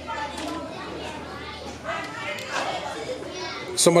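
Children's voices and indistinct chatter in the background. Near the end a man's voice comes in loudly, with a falling pitch.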